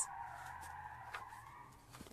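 Quiet paper handling as a page of a paper activity booklet is turned, with one faint tick about halfway, over a faint steady background hum.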